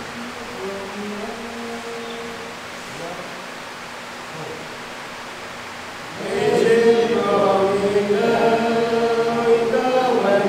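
A group of men singing a church song together without instruments, coming in loudly about six seconds in after a few faint, low held notes.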